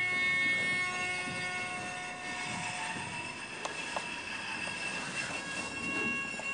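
Experimental electroacoustic room performance: several steady high ringing tones sound together as a drone. Some tones fade out while a new one comes in near the end, with a couple of faint clicks about halfway through.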